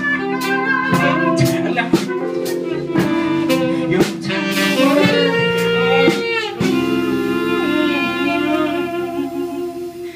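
Live soul-jazz band playing: drum kit keeping a steady beat under hollow-body electric guitar, keyboard chords and a saxophone line. About halfway through, the drums mostly drop out, leaving held chords and a wavering melody that fades near the end.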